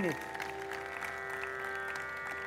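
A steady tanpura-style drone: several held tones sounding together without change, the tuning drone laid under a Hindustani classical concert.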